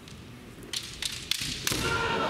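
Bamboo shinai clacking and striking several times in quick succession during a kendo exchange. Near the end a kendoka's long, loud kiai shout begins.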